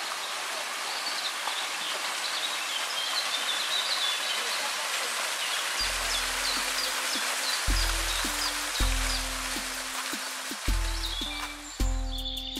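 Rushing water of a small waterfall pouring over rock, with birds chirping. About halfway through, music with deep, repeating bass notes comes in, and near the end the water fades and the music takes over.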